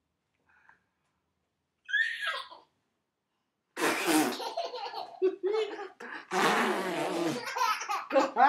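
Mouth raspberries blown lips-to-lips between a father and his baby: a short buzzing blow about halfway through and a longer one a couple of seconds later, with a baby's squeal before them and laughter in between and at the end.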